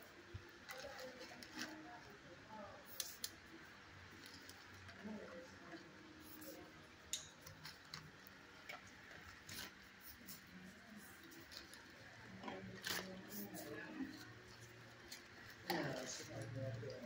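Faint, indistinct voices in the background with scattered light clicks and ticks throughout, and a sharper click about three quarters of the way in and again near the end.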